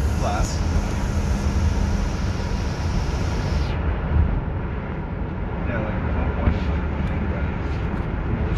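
Steady road and engine rumble inside a moving Dodge minivan's cabin, with a high hiss that drops away about four seconds in.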